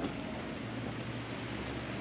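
Steady outdoor background noise: an even hiss with a low hum that comes in about half a second in.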